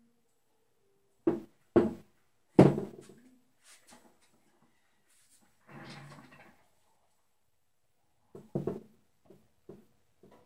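Knocks and taps of a stretched canvas being set down and handled on a plastic-covered table: three sharp knocks in the first three seconds, the last the loudest, a short softer scuffing noise in the middle, and another cluster of knocks near the end.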